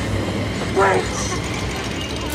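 Low, steady rumbling drone in a horror-film soundtrack, with one short, high-pitched vocal cry a little under a second in.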